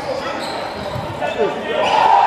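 Basketball bouncing on a hardwood gym court, with a couple of thumps about halfway through, among indistinct voices echoing in a large hall.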